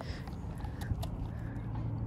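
An Australian shepherd crunching a hard dog biscuit, heard as faint scattered chewing clicks.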